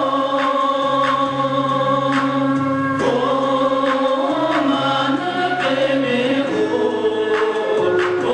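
A male singer performs a slow Tibetan song into a microphone over a backing track of long held chords. A light beat ticks roughly once a second.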